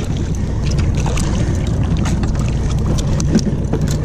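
A steady low rumble with wind on the microphone, broken by scattered sharp knocks and taps as a freshly caught bonito (little tunny) is swung aboard and handled on a fibreglass boat deck.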